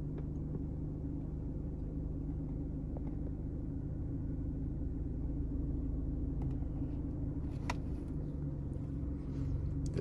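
2004 Mercedes C230 Kompressor's supercharged four-cylinder engine idling steadily, heard from inside the cabin, with one faint click late on.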